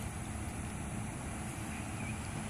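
Steady low background rumble, even throughout, with no distinct events.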